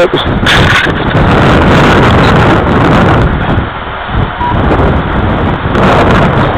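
Strong gusty wind buffeting the microphone: a loud, rough rush that eases briefly about four seconds in.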